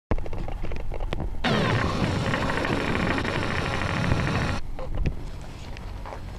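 A camera's zoom motor running for about three seconds, starting and stopping abruptly, as the lens zooms in. A few small handling clicks come before and after it.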